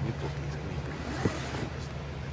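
Handling noise on a phone microphone as the camera and shoe are moved: a steady low hum and faint rustling, with one soft knock a little over a second in.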